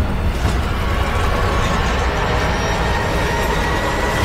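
Film sound design of hovering spacecraft: a loud, steady deep engine rumble, with a thin high sustained tone coming in about halfway through.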